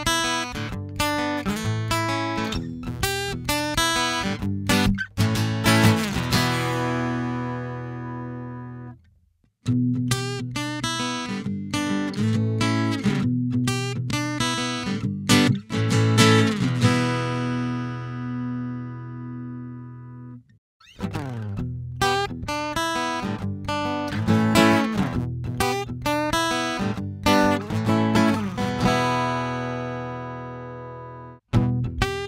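Piezo-amplified Yamaha acoustic guitar playing the same picked passage three times, each ending on a chord left ringing out, run in turn through the TC Electronic BodyRez, the Xvive Mike and the Artec Acoustic EQ pedals to compare their amplified tone.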